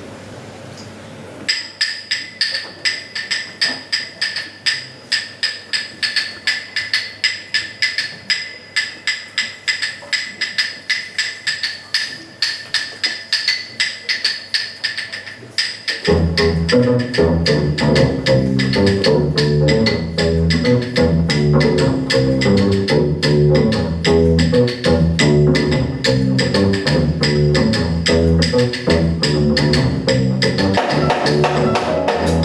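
A high-pitched hand percussion instrument, like a wood block or bell, struck in a steady rhythm to open a live jazz tune. About halfway through, the band comes in under it, piano and double bass playing a repeating low groove with drums.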